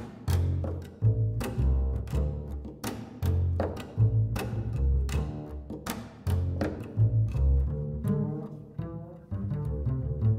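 Solo upright double bass played pizzicato: low plucked notes in a syncopated bass line, each struck with a sharp, clicky attack.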